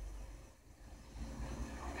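A pause in the dialogue: only a faint low hum and background hiss from the old TV recording, dipping almost to silence about half a second in.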